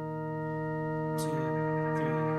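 Background music: a sustained organ-like keyboard chord, held steady and slowly growing louder as the song's intro.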